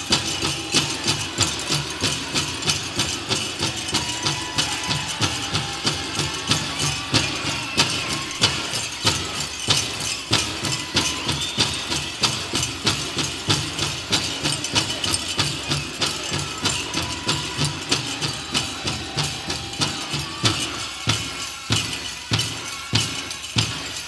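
Powwow drum group: a big hand drum struck in a steady, fast beat of about three strokes a second, with singers' voices wavering over it.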